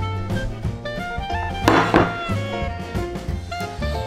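Background music with a melody over a steady bass line, and a brief noisy burst a little under two seconds in.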